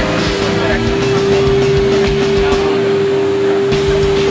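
Factory machinery running with one steady, unchanging hum, under background music and faint voices.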